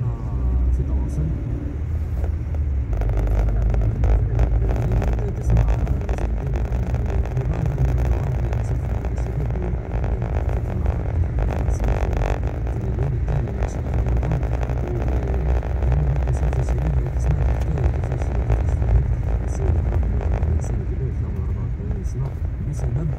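Car driving through town traffic, heard from inside the cabin: a steady low engine and road rumble, with tyre and road noise swelling for several seconds in the first half.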